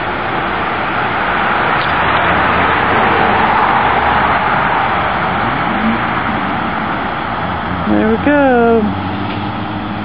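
A vehicle passing on the street: a steady rush of road noise that swells over the first few seconds and then slowly fades.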